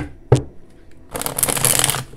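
A deck of divination cards being handled: two light taps, then from about a second in a quick, crackling riffle of the cards being shuffled.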